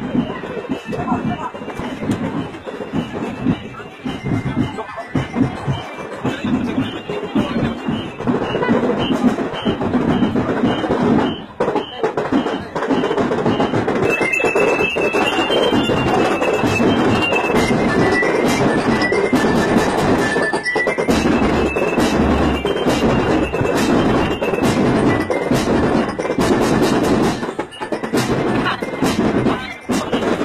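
A school marching drum band playing over crowd chatter, with a high stepping melody from about halfway through.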